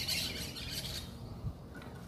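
Birds chirping over a low outdoor background, the chirps fading out about halfway through; a single soft knock about one and a half seconds in.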